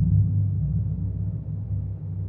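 Low, dark ambient background music: a sustained deep drone that fades out steadily.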